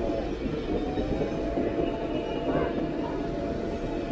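Passenger railcars of a steam excursion train rolling past on the rails: a steady rumble of wheels and running gear, with a faint steady ringing tone over it.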